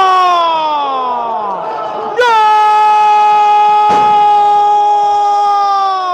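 A football commentator's drawn-out goal cry. Two long held shouts each trail down in pitch; the second starts suddenly about two seconds in. A single sharp knock comes near the middle.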